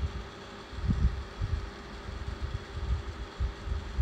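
Low, uneven rumble with irregular soft bumps and a faint steady hum underneath.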